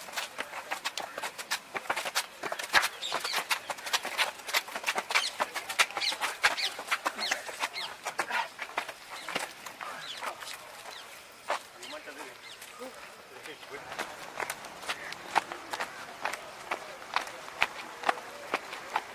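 Trainers slapping and scuffing on a concrete road in a stream of quick, irregular clicks as several people do squatting frog jumps.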